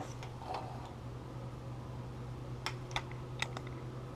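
A few light handling clicks, mostly clustered about three seconds in, over a steady low hum.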